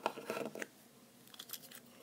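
Brief handling noises: a cluster of quick rustles and clicks in the first half second, then a few faint ticks about a second and a half in.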